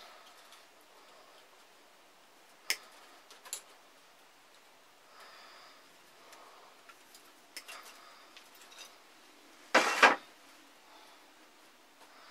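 Pliers cutting strands of chicken wire: a few sharp metallic snips spaced seconds apart, then a louder, half-second rattle of the wire mesh near the end.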